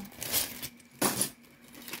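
Metal costume jewelry clinking as loose pieces are handled, in two short bursts, the louder about a second in.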